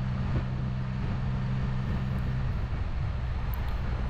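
Can-Am Spyder F3-S three-wheeler's Rotax 1330 ACE inline three-cylinder engine running at a steady cruise, a constant drone mixed with wind and road noise.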